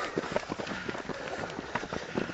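Several fell runners' footfalls on a dry, stony dirt track as they run close past, a quick, uneven succession of steps.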